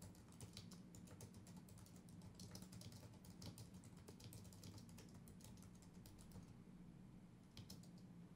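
Faint typing on a computer keyboard: a quick, irregular run of key clicks that thins out after about six and a half seconds, over a low steady hum.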